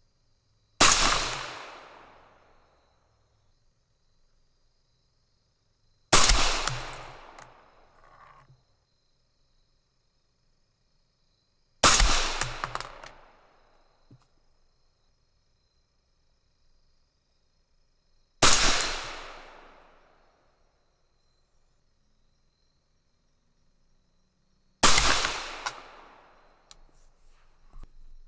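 Five rifle shots from a suppressed 6mm ARC AR-style rifle, fired about six seconds apart, each followed by a ringing echo that dies away over a couple of seconds.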